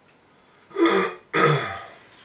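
A man clearing his throat twice in quick succession, about a second in, the second time slightly longer.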